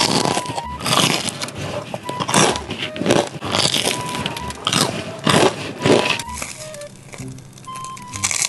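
Crunchy bites and chewing of a breadcrumb-coated deep-fried snack, about a dozen loud, irregular crunches, with faint background music.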